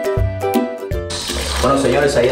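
Background music for about the first second, then a sudden cut to a stream of coconut milk poured through a plastic strainer into a pot of liquid, a steady splashing pour.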